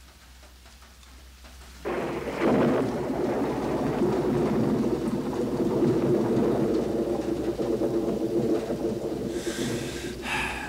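Rain and thunder, a recorded storm effect. Rain fades in quietly, then about two seconds in a loud roll of thunder breaks in and keeps rumbling under the rain.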